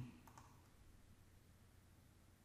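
Near silence: room tone, with two or three faint clicks shortly after the start.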